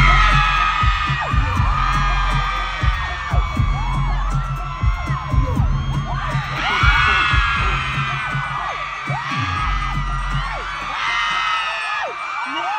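Live stadium concert sound of a K-pop hip-hop stage performance over the PA: a deep throbbing bass beat, briefly dropping out about nine seconds in, with a crowd of fans screaming high-pitched over it throughout.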